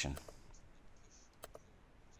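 A computer mouse button clicked once, a sharp press-and-release about one and a half seconds in, over low background hiss.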